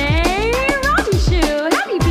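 Upbeat birthday song with a steady drum beat, its melody carried by long, sliding cat-like meows.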